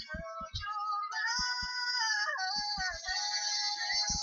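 Music with a sung melody of long held notes that slide from pitch to pitch, over scattered short low thumps.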